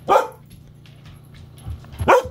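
A dog barking: one short, sharp bark just after the start, then a second bark beginning near the end.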